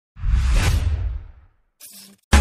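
A whoosh sound effect over a deep low rumble. It swells in at once and fades out over about a second and a half, followed by a brief faint sound near the end.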